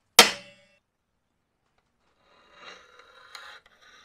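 A single sharp metallic tap on a steel plate that rings briefly, then, about two and a half seconds in, a faint scratching as a steel scribe is drawn across the plate's surface to mark a line.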